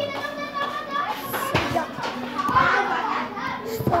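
Children's voices chattering in the background, with a couple of short knocks about a second and a half in and near the end.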